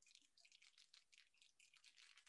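Near silence: room tone with faint, scattered light ticks.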